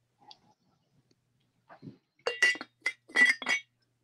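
A china teapot's lid clinking against the pot as it is set back on: a quick run of six or so light, ringing clinks in the second half.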